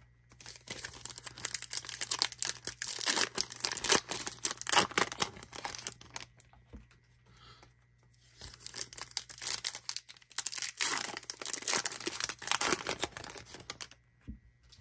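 Panini Hoops trading card pack wrapper being torn open and crinkled by hand, in two spells of crackling lasting several seconds each with a short pause between.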